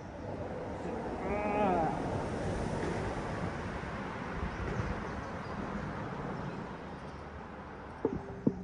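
Steady rushing noise of road traffic crossing the bridge overhead, swelling a second or two in and easing off slowly.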